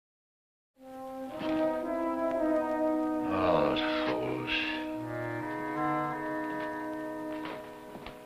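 Silence, then about a second in a dramatic orchestral score comes in with sustained brass chords, led by horns, that thin out toward the end.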